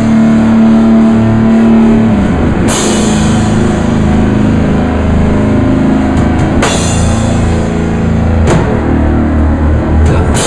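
Live rock band playing loudly: electric guitar and bass over a drum kit. A held low note in the first two seconds gives way to pounding drums, with a cymbal crashing three times.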